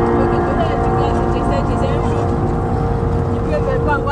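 Road and engine noise inside a moving car's cabin: a steady rumble.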